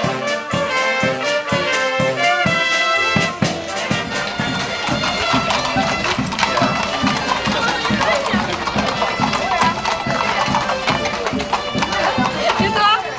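Brass band music playing for the first few seconds. After a cut, horseshoes clop steadily on a paved street, about three to four strikes a second, with crowd chatter around them.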